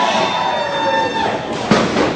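Crowd noise in a hall with a drawn-out shouted voice, then a single sharp thud near the end as a body hits the wrestling ring.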